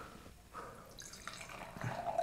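Sparkling brut wine being poured from the bottle into a wine glass: a faint trickle with scattered small ticks.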